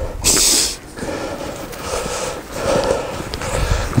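Heavy breathing close to the microphone: a sharp, loud snort-like exhale near the start, then softer breaths about once a second.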